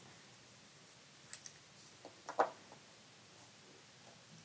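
A few faint clicks and ticks of a Parker Duofold Junior fountain pen's nib touching and moving on paper while writing, over quiet room tone; the clicks are clustered in the middle, the last one the loudest.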